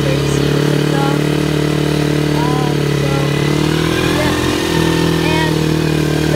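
Single-cylinder four-stroke engine of a 110cc quad (ATV) running steadily under way, its note wavering briefly about four seconds in before settling again.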